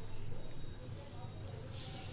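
Granulated sugar poured from a bowl into water in a non-stick kadhai: a soft hissing pour that starts near the end, over a low steady hum.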